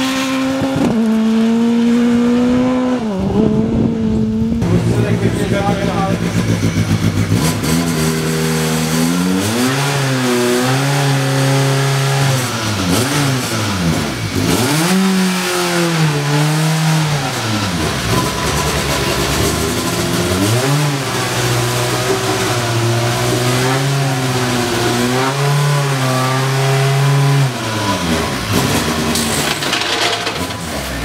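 Rally car engine running at changing revs: its pitch holds steady for a few seconds at a time, then rises and falls repeatedly.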